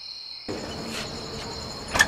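Crickets chirping steadily at night, a continuous high trill, with a low background hiss that comes up about half a second in.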